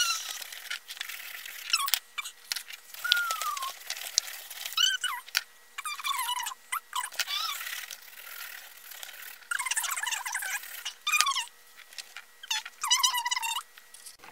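Coloured pencils scribbling hard and fast on paper: a run of scratchy strokes with short squeaks that bend in pitch, coming in clusters several times.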